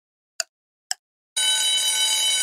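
Quiz countdown-timer sound effect: two clock ticks half a second apart, then about 1.4 s in a steady alarm-bell ring starts as the timer reaches zero.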